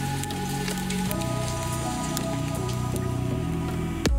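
Homemade chill electronic music: held synth chords over a bass line, changing about a second in and again near the end, with a soft hiss layer flecked with faint rain-like clicks.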